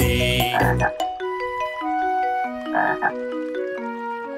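Cartoon frog croaks, one about half a second in and another about three seconds in, over an instrumental children's song melody of clear stepping notes.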